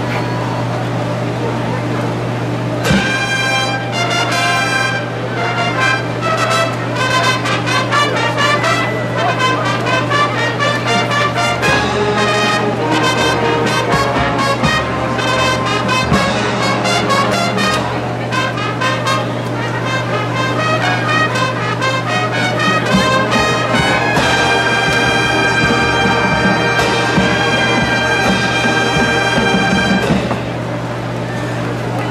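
College marching band's brass section playing together, coming in about three seconds in with a fast-moving passage and ending on a long held chord for the last several seconds.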